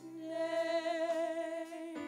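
Two women singing a gospel song into microphones, holding one long note with vibrato over soft, steady instrumental backing.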